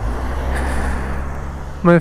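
Small white shuttle bus driving past close by: a steady low engine rumble and road noise.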